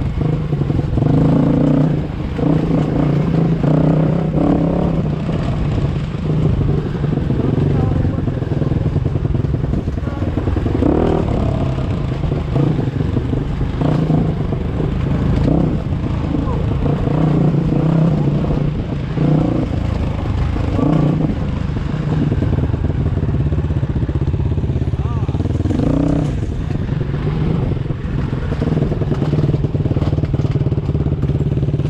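Dirt bike engines running at low trail speed, heard close up from a bike-mounted camera, with the throttle opened briefly every few seconds.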